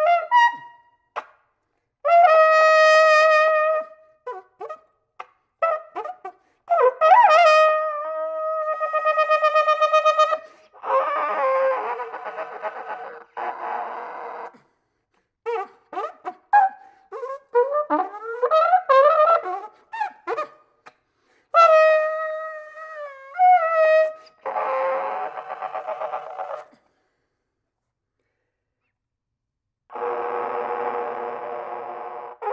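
Solo flugelhorn playing contemporary music: short and held notes, fast wavering figures and pitch glides, alternating with two stretches of hissing, unpitched noise with no clear note. It stops about three seconds before the end.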